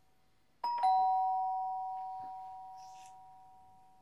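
Two-tone ding-dong doorbell chime: a higher note, then a lower note, both ringing on and slowly fading over about three seconds.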